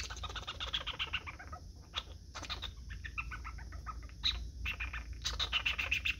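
A young squirrel making quick, soft clicking sounds with its mouth, many a second, in uneven runs, while its paws are at its face.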